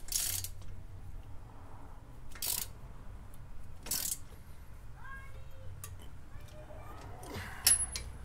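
Socket ratchet wrench tightening a bolt on the coilover strut's mount at the steering knuckle: about four short bursts of ratchet clicking, a couple of seconds apart, as the bolt is drawn snug.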